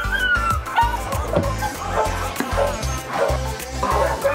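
Puppies yipping and whimpering over background music with a steady beat.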